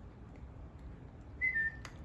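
A single short, high whistle to call a puppy, about a second and a half in, dropping slightly in pitch partway through, followed by a sharp click.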